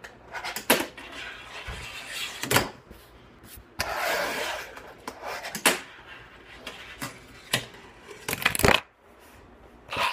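Fingerboard clacking on a countertop as tricks are tried: a string of sharp clacks from the board popping and landing, with two short stretches of its wheels rolling in between. The loudest clatter, several clacks close together, comes near the end.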